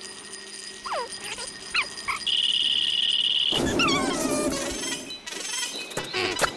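Sped-up cartoon soundtrack effects: a couple of short falling whistles, then a steady high pulsing buzz for about a second and a half, then a louder, noisy cry that falls in pitch.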